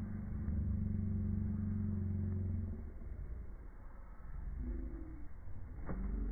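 A low, steady engine-like hum for about three seconds, fading out, then a quieter stretch.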